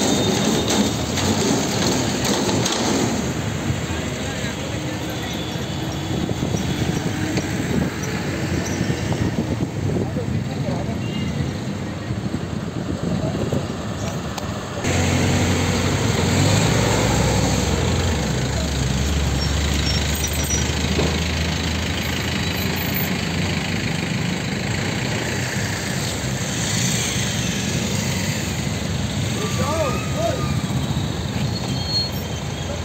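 Roadside traffic noise from a busy highway, with people's voices in the background. About halfway in, the sound changes abruptly and a heavy vehicle's engine rumbles low under it.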